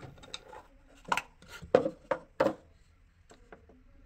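Plastic cover of a Sunvic two-port valve actuator being worked off its metal chassis by hand: a series of sharp plastic clicks and knocks, four loud ones close together in the middle, with fainter clicks before and after.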